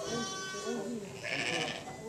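Sheep bleating in a crowded flock: one long bleat at the start, then a second, brighter bleat a little past halfway.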